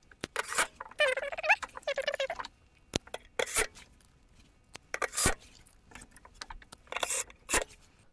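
DeWalt 12V cordless drill-driver running in short bursts about a second in, its motor whine wavering as it drives out a battery terminal bolt. Then several sharp metallic clicks and clinks as the bolt and cable lug are handled.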